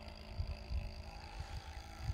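Wind buffeting the microphone outdoors: an uneven low rumble that swells and dips in gusts, with a faint steady high-pitched tone underneath.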